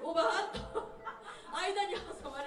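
Speech with chuckling over a microphone; no music playing.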